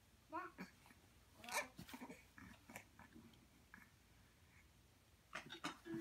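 A baby's short, faint grunts and squeaky vocal noises, scattered and broken, the loudest about a second and a half in and a few more near the end.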